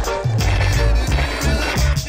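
A music track with a steady, bass-heavy beat, and under it the sound of skateboard wheels rolling on paving stones.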